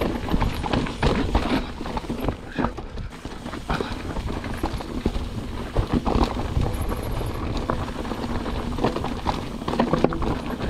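Mountain bike rolling fast down a rocky dirt trail: tyres crunching over stones, with irregular knocks and rattles from the bike as it hits rocks. Low wind rumble on the camera microphone runs underneath.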